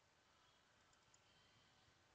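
Near silence: faint room hiss with a couple of very faint, brief mouse clicks about a second in, as a folder is opened.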